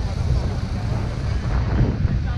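Indistinct chatter of an outdoor crowd of people over a steady low rumble.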